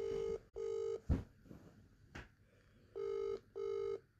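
Phone call's ringback tone heard through the handset's speaker: a British-style double ring, two short beeps, a pause of about two seconds, then two more. Two soft knocks fall in the pause.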